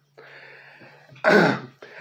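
A man clearing his throat: a short, rough burst a little past a second in, after a faint breathy noise.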